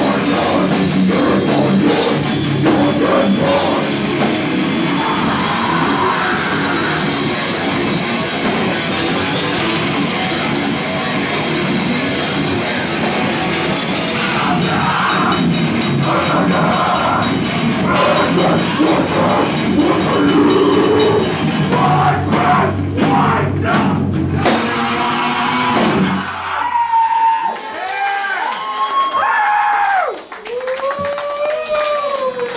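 Live rock band playing loud and full: drum kit and distorted guitars. Near the end comes a run of stop-start hits, and then the song cuts off about four seconds before the end, leaving a few ringing, sliding tones.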